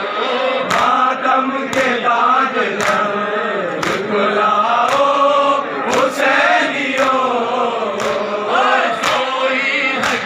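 A crowd of men chanting a noha together in unison, with sharp chest-beating slaps of matam landing together about once a second.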